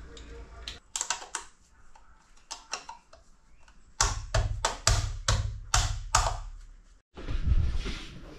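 A small hand tool being worked against a painted wall: a few light scrapes and taps, then a quick run of about seven sharp, even strokes, cut off abruptly near the end.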